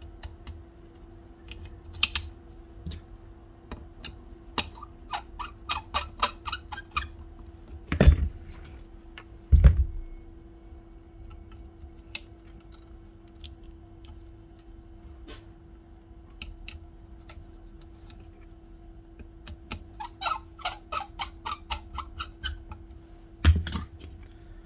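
Hand-handling noise from reassembling an old Hitachi router: scattered small clicks and taps of parts on the housing, with quick runs of clicking twice, and two heavier knocks about eight and ten seconds in. A faint steady hum runs underneath.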